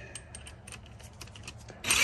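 Light scattered clicks and taps of a screw being set against a sheet-metal air-handler panel, then near the end a short, loud burst of a cordless impact driver running a panel screw in.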